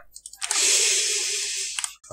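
A long breathy exhale close to the microphone, like a sigh, lasting over a second. A few faint clicks come just before it.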